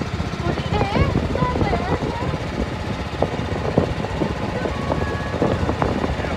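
A small wooden motorboat under way: its engine runs with a dense low rumble and wind buffets the microphone. Voices are faintly heard about a second in.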